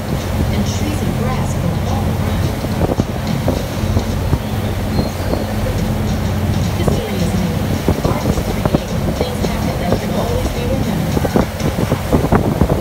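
Passenger ferry's engines droning steadily under way, with the rush of wind and water and indistinct passenger chatter in the background.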